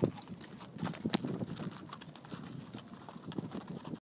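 A horse's hooves stepping about on packed dirt: an irregular scatter of short knocks, with the sharpest one about a second in.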